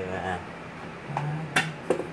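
A man's voice calling out briefly, then a few sharp smacks in the second half.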